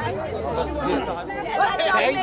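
Several people talking over one another: indistinct crowd chatter with no single clear voice.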